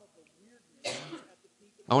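A person clears their throat once, a short cough-like burst about a second in, during a pause in a talk.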